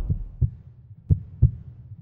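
Heartbeat sound effect: deep double thumps, lub-dub, about one pair a second. A low rumble is dying away at the start.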